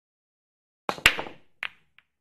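Sharp clacks from the intro sound of a logo card: a quick cluster of two or three about a second in, each ringing briefly, then a single clack about half a second later.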